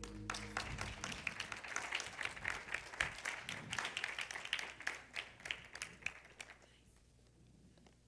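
Audience applause right after a song's last note stops. The clapping runs for about six and a half seconds, then dies away.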